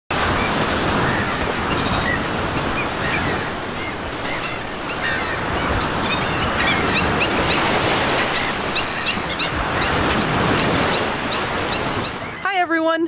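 Ocean surf washing onto a beach, a steady rush of noise, with birds calling in short rising chirps that come about three a second through the second half.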